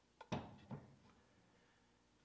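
Near silence, with two or three faint knocks in the first second: the 2x4 handled in the bench vise.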